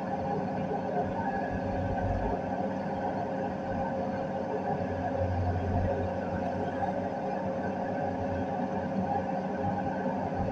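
Komatsu hydraulic excavator's diesel engine running steadily with the boom working, heard from inside the operator's cab; its low rumble swells for a moment about five to six seconds in.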